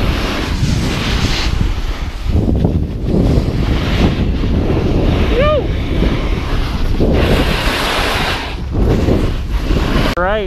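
Wind rushing over the microphone of a camera carried while snowboarding downhill, along with the board's edges scraping over packed snow. The noise swells and fades in repeated surges, and a short pitched call cuts through about halfway.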